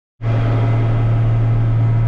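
Case IH 8940 Magnum tractor's six-cylinder diesel engine running steadily as the tractor drives along, heard from inside the cab as an even low drone.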